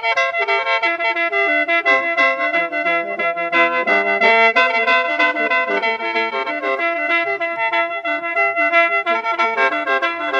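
Khaen, the Lao/Isan bamboo free-reed mouth organ, playing a lam long-style melody in A minor over steady held drone notes, with an even pulsing rhythm.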